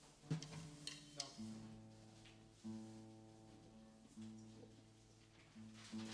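A plucked string instrument being tuned: the same low note is plucked and left to ring about every second and a half. A few sharp knocks sound in the first second or so.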